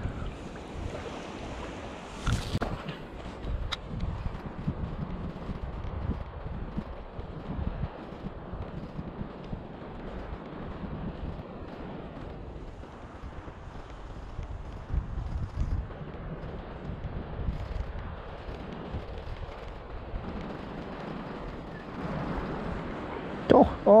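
Wind buffeting the microphone over lapping shallow seawater, with a spinning fishing reel being cranked to bring in the line. A sharp click sounds about two seconds in.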